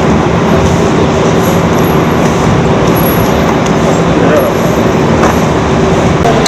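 Loud, steady street noise: road traffic and vehicle engines running, with crowd chatter mixed in.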